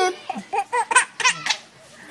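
A four-month-old baby laughing in a string of short, high-pitched bursts, fading out about a second and a half in.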